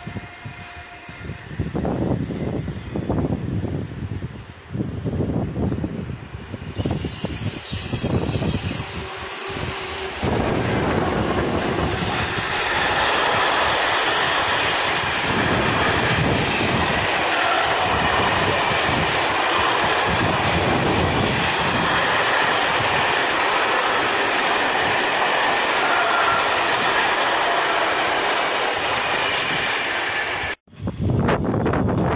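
A freight train of open steel wagons running past close by: uneven rumbling and clatter of wheels on the rails at first, a high wheel squeal that sags slightly in pitch about a quarter of the way in, then a loud steady rush of passing wagons.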